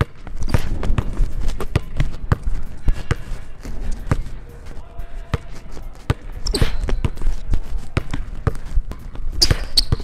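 Basketball dribbled fast on a hardwood gym floor in a between-the-legs, behind-the-back and freeze-dribble combo, a quick run of hard bounces. Two brief high sneaker squeaks, about six and a half seconds in and near the end.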